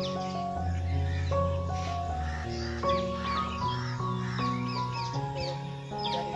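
Background music of held chords changing about every second, with many short, high bird calls running over it.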